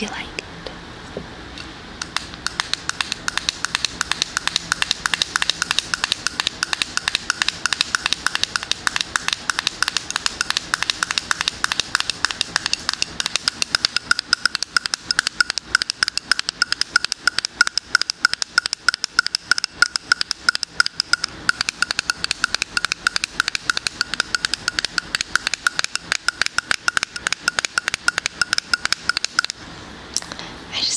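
Rapid tapping of fingers on the metal top of a moisturizer jar's lid, starting about two seconds in. The taps have a tinny ring at a steady pitch, which grows stronger about halfway through.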